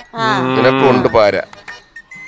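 A man's voice singing a drawn-out vowel, one long note that bends in pitch for about a second, followed by a short second note.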